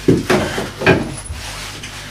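Two sharp knocks about a second apart, from things being handled, over a steady low hum.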